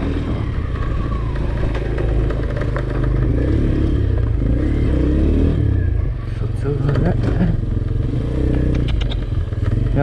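Small motorcycle's engine running at low speed while being ridden, with indistinct voices over it in the middle and a few clicks and rattles late on.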